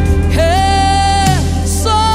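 Live gospel worship music: a woman's voice slides up into one long held high note over the band's steady bass, then begins a falling phrase near the end.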